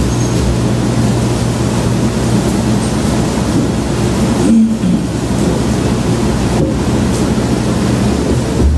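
Steady low electrical hum under an even hiss, the noise of the sound system or recording brought up loud while no one speaks.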